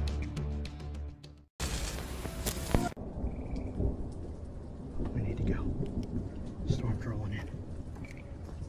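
Orchestral trailer music holding low chords cuts off about a second and a half in. A loud burst of hiss follows for about a second, then a rough, rumbling noise with faint wavering high sounds carries on.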